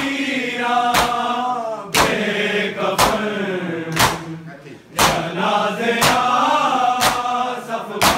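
A group of men chanting a noha, a mourning lament, in unison, with chest-beating (matam) slaps in unison about once a second. The voices drop briefly around the middle before the next slap.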